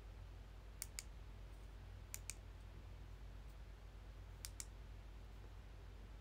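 Faint light clicks in three pairs, the two clicks of each pair coming in quick succession, over a low steady hum.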